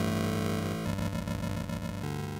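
Synthesizer music playing sustained notes, changing to a new chord about a second in.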